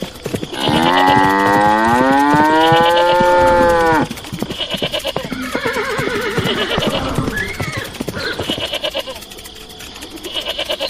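A cow mooing: one long call that rises in pitch and then holds, cut off suddenly about four seconds in. Quieter, wavering animal calls follow.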